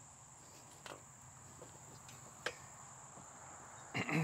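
Faint steady high-pitched chirring of insects, with two light clicks about one and two and a half seconds in, from the steel frame tubing being handled.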